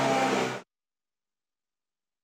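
A steady low hum with other faint sound cuts off abruptly about half a second in, leaving complete digital silence: dead air at an edit in the broadcast audio.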